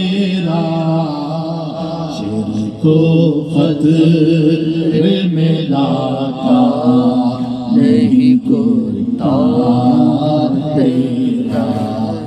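A man's voice chanting a verse of an Urdu devotional poem (manqabat) in a drawn-out melody, holding long notes that waver and slide between pitches, with short breaths between phrases.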